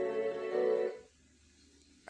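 Film intro music playing from a flat-screen TV's built-in speakers, held sustained chords that cut off suddenly about halfway through.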